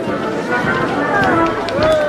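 Overlapping voices of a crowd of people talking at once, with no single clear speaker.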